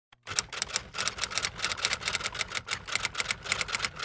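Typewriter keys striking in a fast, even run of sharp clacks, about seven a second, starting just after the beginning, as the typing sound of an intro title card.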